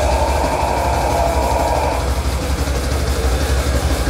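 Metal band playing live: a loud, steady wall of distorted guitars and bass with a deep low rumble.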